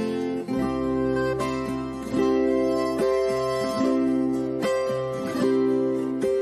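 Live sertanejo band playing an instrumental passage with strummed acoustic guitar over a steady bass, the chords struck roughly once a second.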